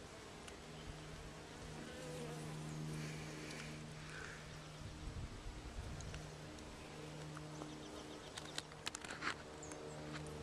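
Honeybee colony humming inside a top bar hive, a steady buzz from many bees at work building comb. A few light clicks come near the end.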